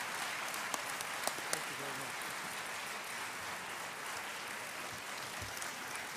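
A seated audience applauding steadily, the clapping slowly easing off.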